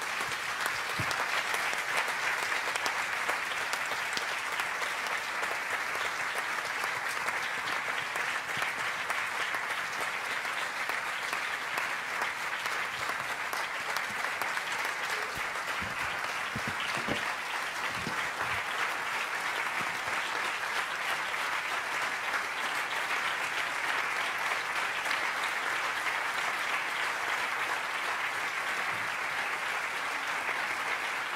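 A large audience applauding in a long, steady round of applause.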